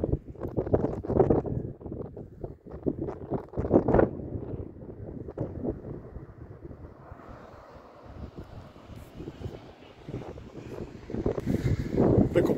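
Wind buffeting the microphone in irregular gusts for the first few seconds, then easing to a softer, steady rush.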